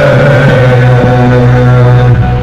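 Male voices chanting in unison, holding one long low note that sounds like a drone.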